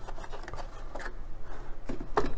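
Cardboard cutout sheets and the box's plastic tray being handled: quiet rustling and scraping with a few light clicks.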